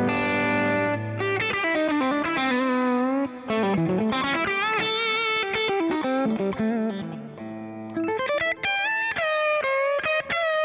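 Overdriven electric guitar playing a lead line. A chord rings at the start, then single notes with string bends and vibrato, and a quick run of short notes near the end.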